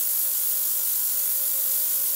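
Ultrasonic cleaning tank running with water in it: a steady high hiss, with a faint steady hum beneath.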